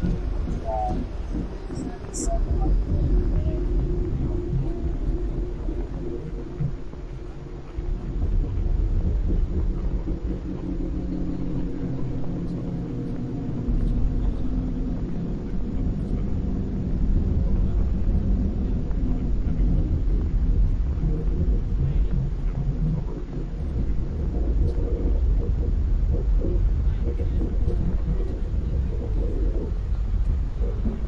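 A steady, loud low rumble with muffled, unintelligible voice-like sounds over it.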